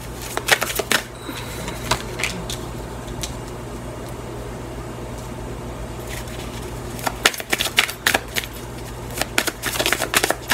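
A tarot deck being shuffled by hand: bursts of quick card clicks in the first two seconds and again over the last three, with a quieter stretch between, over a steady low hum.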